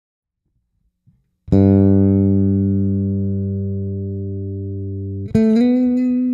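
Solo bass guitar: a low note is plucked about a second and a half in and left to ring, slowly fading. Near the end a higher note is struck and slides up slightly in pitch.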